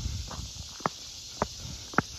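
Footsteps of a person walking on an asphalt road, a sharp step about every half second, over a steady high hiss.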